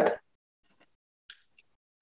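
The last syllable of a man's spoken question ending, then near silence over a video call, with a faint brief sound about a second and a half in.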